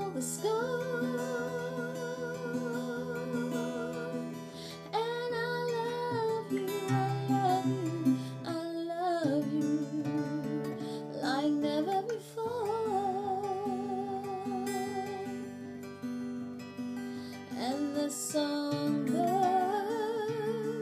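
A woman singing a slow ballad in long held notes with vibrato, in several phrases, accompanying herself on an acoustic guitar.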